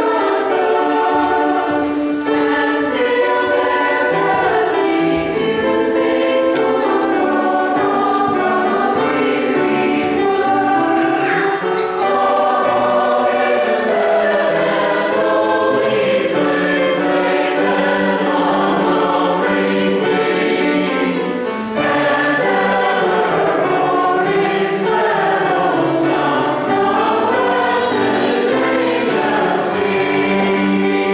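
A mixed church choir of men's and women's voices singing a Christmas cantata in parts, the voices moving together in sustained chords with one brief breath about two-thirds of the way through.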